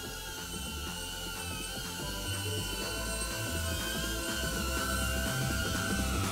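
Background music with a shifting bass line, over the steady high whine of a DJI Avata's propellers as it hovers low; the whine wavers slightly in pitch and grows louder as the drone comes closer.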